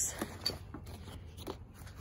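Hands rummaging through a pile of Build-A-Bear clothes and plastic hangers: faint rustling with a few light clicks.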